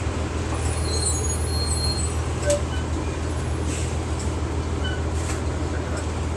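Inside a 1999 Nova Bus RTS city bus on the move: a steady low engine drone under road and body noise. Faint, brief high squeaks come about a second in, and a short sharp click about two and a half seconds in.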